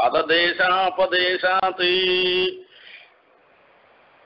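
A man chanting a Sanskrit verse in a melodic recitation, ending on a long held note about two and a half seconds in, then a pause with only faint room tone.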